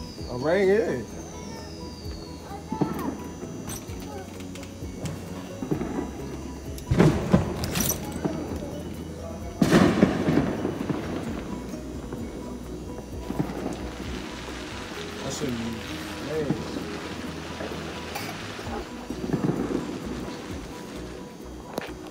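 Fireworks going off: sudden loud bangs about seven and ten seconds in, each trailing off in a rumbling echo, then a longer stretch of crackle. Voices talk in the background.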